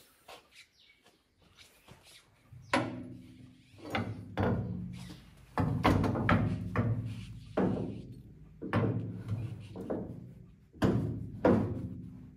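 Steel parts knocking together: about a dozen irregular knocks, each ringing briefly, as a hydraulic ram of a three-point linkage is worked into its mounting on the chassis.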